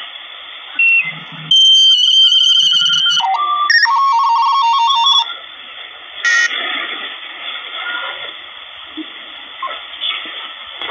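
Malachite DSP SDR V5 receiver tuning across the 28 MHz band in upper sideband, its speaker giving a hiss of band noise. From about a second and a half in, for some three and a half seconds, a signal comes through as steady whistling tones that step up and down in pitch. A short chirp follows near the middle, then the hiss continues.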